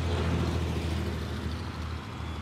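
A motor vehicle's engine running steadily, a low hum under outdoor traffic-like background noise.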